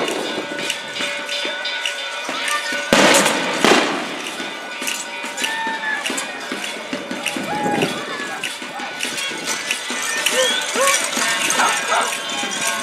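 Street procession: a mix of voices and music with many sharp clicks and rattles throughout. A loud crash-like burst comes about three seconds in.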